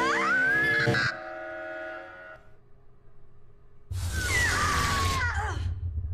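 Horror film soundtrack: a loud sustained music chord with a shrill rising, held tone cuts off abruptly about a second in. After a fading tone and a quiet lull, a sudden loud jolt of noise with falling shrill tones comes in over a low rumble that carries on.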